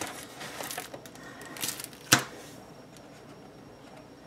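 Paper sheets and packaged sticker sheets being handled, rustling, with one sharp tap a little after two seconds in, the loudest sound.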